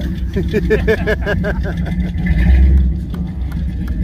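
Rambler American station wagon's engine running low as the car drives slowly past, its rumble rising briefly about halfway through.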